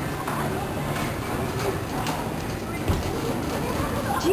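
Carousel in motion: a steady mechanical rumble and rattle from the turning platform, with faint riders' voices mixed in. One short knock about three seconds in.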